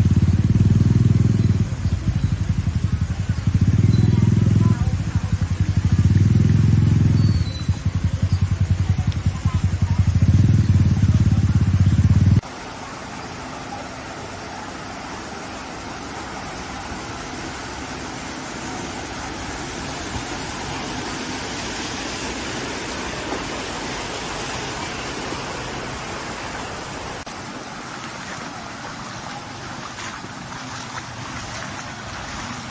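Vehicles in a flooded street: for about twelve seconds a heavy low rumble comes and goes in four surges, then after a cut a quieter steady rush of water and engine noise as pickup trucks drive slowly through shallow floodwater.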